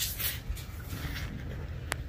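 Rustling and brushing noise from a handheld phone being moved around under a van, with one sharp click near the end, over a steady low rumble.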